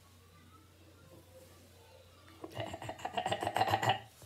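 Quiet room tone for about two and a half seconds, then a boy laughing in quick, choppy bursts until the end.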